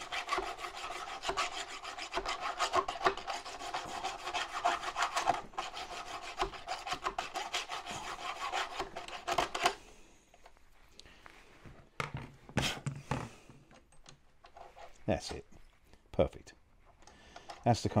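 Hand-held round file rasping back and forth in a tight metal pin hole in the tank's suspension, in rapid strokes, enlarging the bore so the pin goes through loose. The filing stops about ten seconds in, and a few light clicks and taps follow.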